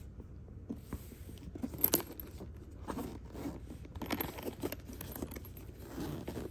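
Zipper of a fabric-covered hard-shell case being pulled open, with scraping and rustling handling noise and a sharp click about two seconds in.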